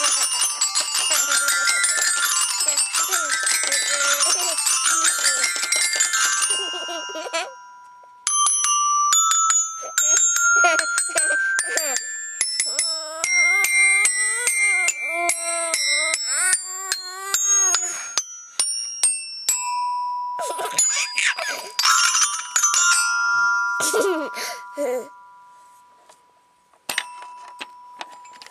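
Toy metal-bar glockenspiel struck by a child with a mallet: a rapid, dense flurry of ringing notes for the first few seconds, then scattered single strikes with notes left ringing.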